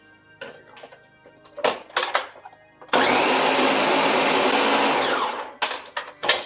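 A Ninja countertop blender runs a short burst through a thick mix of frozen strawberries: it spins up about three seconds in, runs loudly for about two and a half seconds, then winds down. Before it starts there are a few sharp knocks of utensils against the jar.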